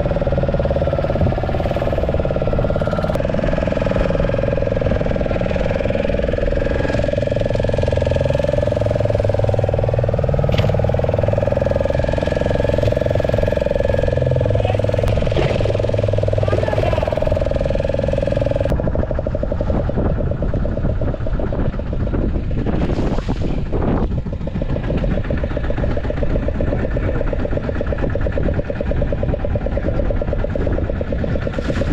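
A fishing boat's motor runs steadily, with people talking over it. The sound changes abruptly about two-thirds of the way through.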